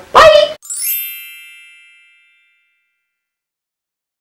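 A single bright bell-like chime struck about half a second in, ringing and fading away over about a second and a half.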